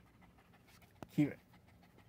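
A dog panting softly close to the microphone, with faint scattered ticks and a sharp click about a second in.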